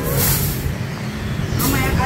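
Street traffic passing: a motor vehicle going by with low engine rumble and a brief hiss about the first half-second.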